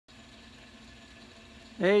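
Faint, steady background hum, then a man's voice starts speaking near the end.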